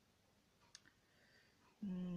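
Near silence with faint room tone, broken by one or two short faint clicks a little under a second in; a man's voice begins just before the end.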